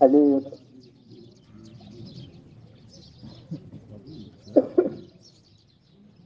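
Birds chirping in the background throughout, under a voice that speaks briefly at the start and again near the end.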